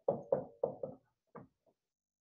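Dry-erase marker tapping on a whiteboard as words are written: a quick run of four sharp taps in the first second, then two softer ones.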